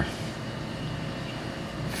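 Steady, even mechanical whir and hiss with no knocks or changes in level.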